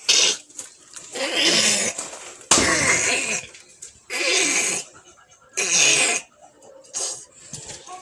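A child's breathy laughter and squeals in about five short bursts, each under a second long.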